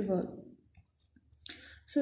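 A woman's voice trails off, followed by a short near-silent pause, then a few faint clicks and a brief soft rustle just before she speaks again.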